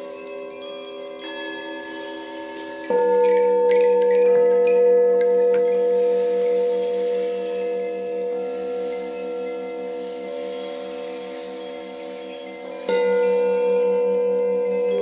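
Sound-bath music of ringing singing bowls, with many long, layered tones held steady. One bowl is struck loudly about three seconds in and another near the end, with a few light, chime-like tinkles just after the first strike.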